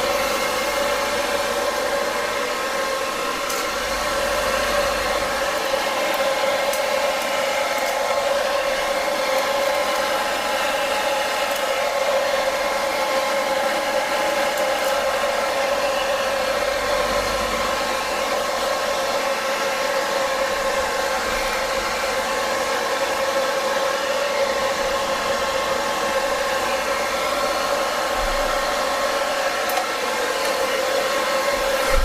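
Handheld hair dryer running steadily: an even blowing hiss with a steady motor whine of several held tones.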